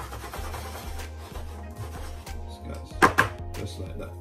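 Metal springform cake tin full of batter knocked twice in quick succession against the worktop about three seconds in, settling the batter, over background music with a steady bass line.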